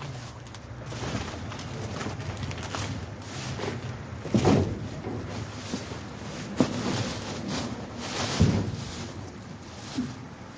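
Rummaging through plastic trash bags in a metal dumpster: irregular rustling and shifting, with a few louder knocks in the second half.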